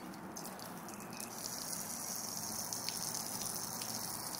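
Water from a garden hose falling in a steady stream onto a flat board and splashing as it runs off, an even rain-like hiss.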